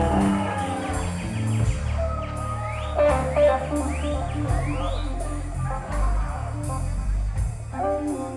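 Live blues-rock band playing a slow instrumental passage: electric guitar over bass and drums, with a run of four quick rising sweeps high up about three to five seconds in.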